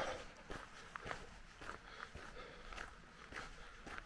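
Faint footsteps of a person walking over ground strewn with fallen leaves, a step about every half second.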